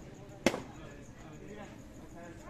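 A badminton racket striking a shuttlecock: one sharp, loud hit about half a second in.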